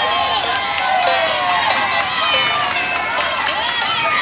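Crowd of children and adults chattering and calling out all at once, many voices overlapping into a steady loud hubbub.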